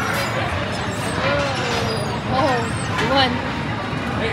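Background crowd chatter: indistinct voices of several people over a steady low rumble, with a couple of louder drawn-out voice sounds in the middle.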